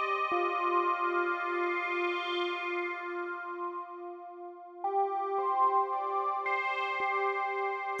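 Sonic Projects OP-X PRO II software synthesizer, an Oberheim OB-X emulation, sounding a held chord over a lower note that repeats about three times a second from its arpeggiator. The chord shifts up to new notes about five seconds in.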